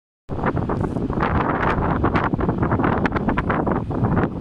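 Wind buffeting the microphone: a loud, gusty rumble that surges and eases continuously.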